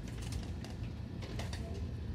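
Vertical window blinds clicking and rattling as the slats are pushed aside, a string of faint, short clicks.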